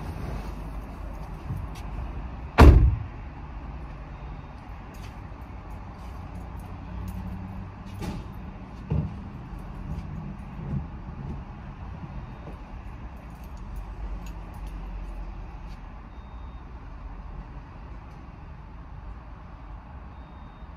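A car door slams shut once, loudly, about two and a half seconds in, heard from inside the car. After it, a steady low rumble of vehicles and a few faint knocks.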